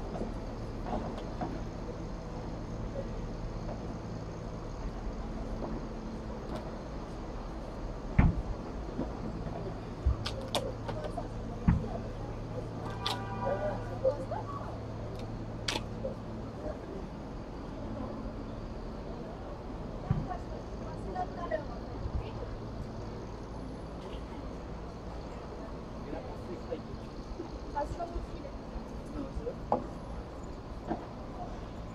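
Padel ball struck by solid paddles during a rally: a few sharp pops spaced a second or two apart, over a steady low hum and a murmur of distant voices.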